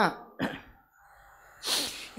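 A man coughing into a microphone: a small sound about half a second in, then one sharp cough near the end.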